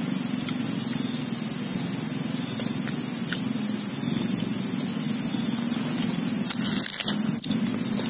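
Steady, unbroken high-pitched drone of a chorus of insects in the plantation undergrowth, with a couple of faint clicks about seven seconds in.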